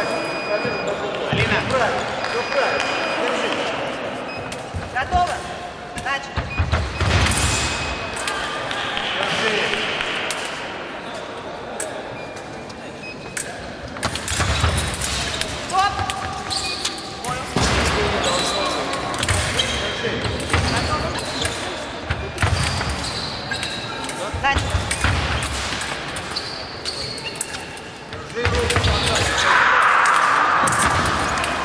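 Fencers' feet thudding and stamping on a wooden sports-hall floor during a bout, in irregular clusters, with indistinct voices in the hall.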